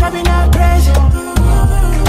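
African dancehall music from a nonstop DJ mix: a heavy bass line under a steady drum beat with pitched melody lines.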